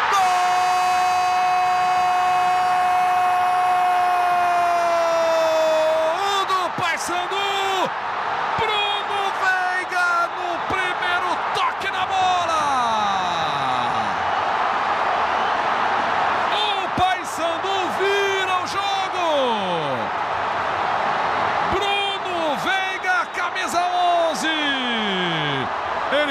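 A football commentator's goal shout, one long held 'gol' of about six seconds. Excited play-by-play calling follows over a stadium crowd cheering.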